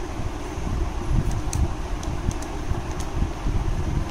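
A few faint clicks of plastic desk-calculator keys being pressed while figures are added, over a steady low rumbling background noise.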